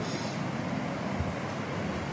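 Steady background noise, an even hiss with a low rumble and no distinct events: room noise such as a fan, an air conditioner or traffic outside.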